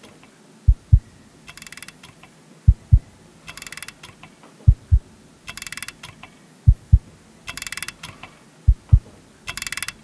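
A slow heartbeat from the film's soundtrack: two deep thumps about a quarter-second apart, repeating every two seconds. Between each pair of beats comes a short burst of rattling, ratchet-like clicking.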